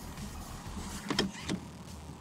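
Car seatbelt being unbuckled, with a couple of clicks just over a second in as the latch releases and the belt retracts.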